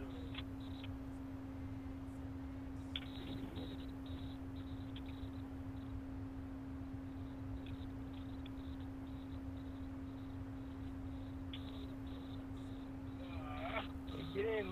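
A steady low hum on one tone, over a faint low rumble, with a few faint ticks.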